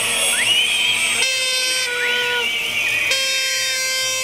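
Protest crowd blowing plastic toy horns (Tröten) in long held blasts, two of them about two seconds apart, with whistles rising and wavering over them.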